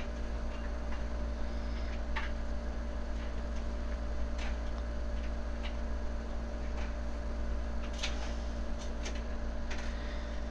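Faint, irregular light taps of a fingertip on a tablet's touchscreen, about a dozen spread over several seconds, over a steady low electrical hum.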